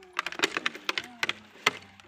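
Irregular sharp dry clicks and crackles, several a second, with faint wavering tones underneath.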